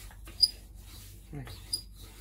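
Wooden rolling pin being rolled back and forth over soft floured dough, with two short high squeaks: a sharp one about half a second in and a weaker one near the end.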